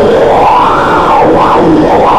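Loud, dense experimental noise music: a thick, churning wash of sound with a band that sweeps up in pitch and back down in the first second and a half, then wavers.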